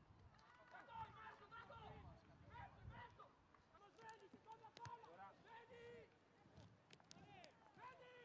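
Faint shouts and calls of football players across an open pitch, many short voices one after another, with a few sharp knocks of the ball being kicked.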